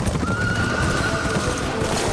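A horse galloping over dry fallen leaves, its hoofbeats thudding steadily. The horse gives one high, drawn-out neigh that starts about a quarter-second in and lasts over a second.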